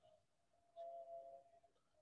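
Near silence, room tone in a small room, with a faint, brief steady tone a little under a second in.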